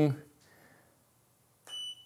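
Mostly quiet, then near the end a click and a short, high beep as the automated flash focus-stacking setup fires one frame of the stack.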